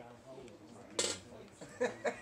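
A single sharp clink, like a hard object tapped or set down, about a second in, in a quiet room, with faint distant voices starting near the end.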